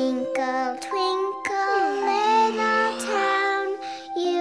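Children's song: a child's voice sings a gentle, lullaby-like tune over soft music, with a long downward glide in pitch about halfway through.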